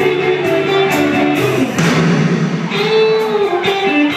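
Live blues band playing with electric guitar to the fore: sustained lead notes that bend in pitch over a steady beat.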